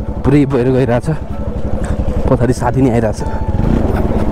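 Bajaj Pulsar NS 200 motorcycle's single-cylinder engine running steadily, a continuous low pulsing, while a man's voice talks over it.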